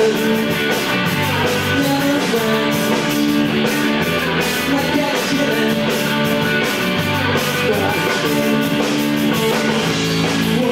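Rock band playing live: electric guitars and bass guitar over a drum kit keeping a steady beat.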